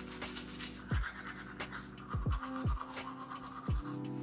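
Manual toothbrush scrubbing teeth with braces through a mouthful of foamy braces cleaner, over background music with held tones and a beat of sharp falling bass drops.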